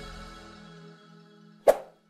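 End-screen music fading out, then a single short, sharp pop near the end: a click sound effect for the Subscribe button being pressed.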